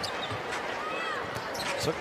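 A basketball being dribbled on a hardwood court, with steady arena crowd noise.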